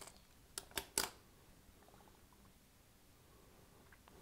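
Three light clicks in quick succession about a second in, a small hand tool knocking against the hard clay work board, then near silence.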